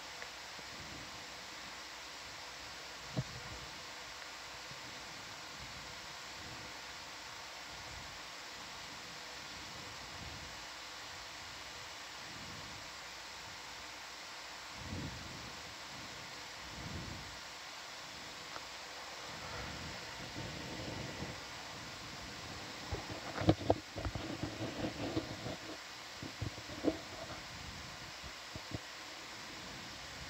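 Steady hiss of control-room background noise with a faint steady hum, broken by a few soft low thumps. About three-quarters of the way through comes a cluster of sharp clicks and knocks.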